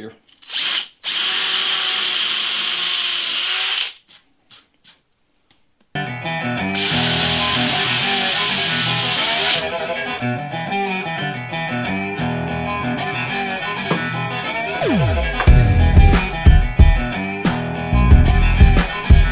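Cordless drill boring holes into a cedar stump: a short burst, then a steady run of about three seconds. After a pause, background music with a beat and guitar comes in, with a second run of the drill over it for about three seconds.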